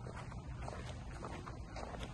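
Wind rumbling on a handheld microphone outdoors, with faint irregular footfalls on grass.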